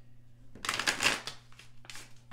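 A deck of tarot cards being shuffled by hand: a quick flutter of cards lasting well under a second, followed by a single short snap of the cards near the end.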